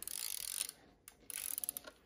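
The metal crank on the side of a Mamiya C33 twin-lens reflex camera being turned, its ratchet mechanism clicking. It gives a short rasp, then a quick run of small clicks in the second half.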